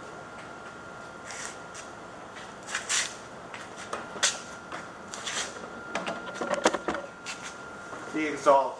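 Paper rustling and scattered small knocks and clicks as papers and objects are handled at a table. The sounds grow busier in the second half.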